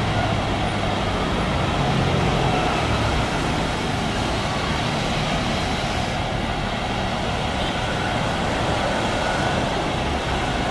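Jet engines of an Airbus A330 running as it rolls along the runway: a steady, loud rush of noise over a low rumble. The high hiss eases slightly about six seconds in.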